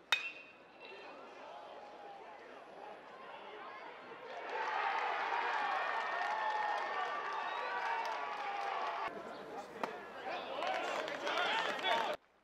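Aluminium baseball bat hitting a pitched ball, one sharp ringing ping. About four seconds later many voices cheer and shout together for several seconds, with more shouting near the end.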